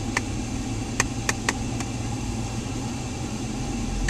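A car engine running at a crawl in slow traffic, heard from inside the cabin as a steady low hum, with a handful of sharp irregular clicks in the first two seconds.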